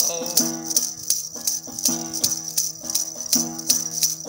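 Long-necked gourd lute plucked in a repeating folk figure, over a steady rhythm of sharp rattle-like percussion strokes about four a second.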